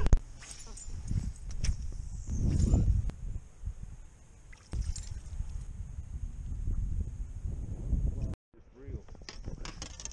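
Low, uneven rumble of wind on the microphone, with a few scattered knocks. It opens with a laugh, and the sound drops out completely for a moment near the end.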